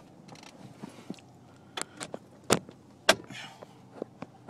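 Several short, sharp clicks over a quiet background, the loudest between about two and three seconds in.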